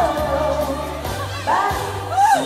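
A live song: a woman singing into a microphone over keyboard accompaniment with held bass notes. Her sung line comes in near the end.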